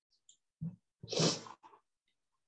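A person sneezing once: a short voiced intake, then a louder, breathy burst about a second in.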